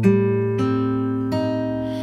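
Acoustic guitar ringing out an A minor seventh flat five (half-diminished) chord, voiced root, seventh, third and fifth over a low A bass. The chord is struck, then single notes are plucked in about half a second and a second and a half in, and all are left to sustain.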